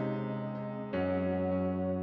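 Background music: sustained keyboard chords, moving to a new chord about a second in.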